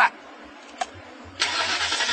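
After a quiet stretch with a single click, steady vehicle noise starts abruptly about one and a half seconds in and keeps going.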